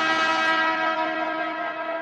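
A sustained electronic synthesizer note with many overtones from a bounce house mix, ringing on alone after the beat drops out and fading slowly.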